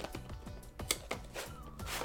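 Cardboard phone box being handled, the inner box sliding out of its printed sleeve, with scattered small clicks and scrapes; the sharpest comes about a second in. Quiet background music runs underneath.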